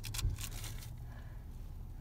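Faint rustle and a few light clicks from handling a small blind-bag wrapper as a toy figure is taken out of it, mostly near the start, over a low steady hum.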